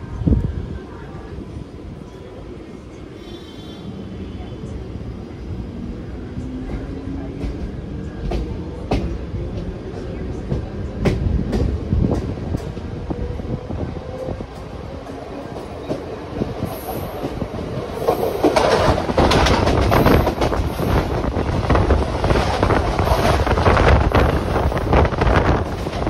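Mumbai suburban local train running, heard from its open doorway: steady wheel rumble with scattered clicks over the rail joints and a faint whine rising in pitch. In the last few seconds a louder rushing clatter as another local train passes close alongside.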